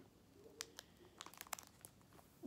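Faint crinkling and a few light clicks of plastic binder sleeves and trading cards being handled.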